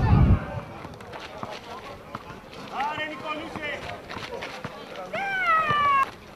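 High-pitched young voices shouting out, once briefly about halfway through and again in a longer falling call near the end. Scattered light knocks and a short low rumble at the very start sit under them.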